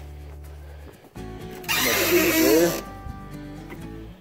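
A man laughing for about a second midway, over a loud rustling noise. Before it, a low steady hum cuts off about a second in.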